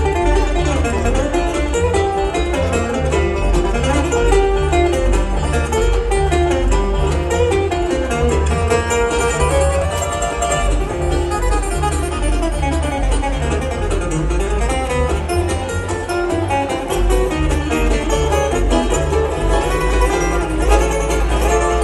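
Live bluegrass band playing an instrumental passage on acoustic guitar and banjo over a steady upright-bass pulse.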